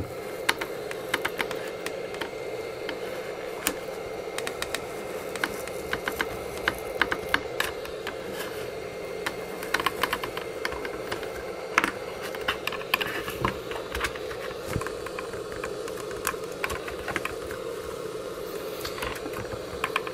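Hot air gun blowing steadily, with irregular light clicks and crackles as the brittle plastic keyboard membrane is pried and peeled off the case.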